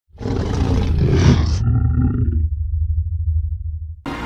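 A loud roar-like sound effect, full of noise, that cuts off suddenly about one and a half seconds in. A brief ringing tone follows, and then a low rumble lingers.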